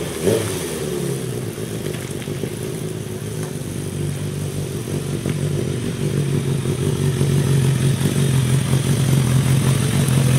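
Kawasaki ZRX1100 inline-four motorcycle engine. It blips briefly at the start and falls away in pitch as the bike rides past, then runs at low revs as the bike rolls up close and settles into a steady idle that grows louder near the end.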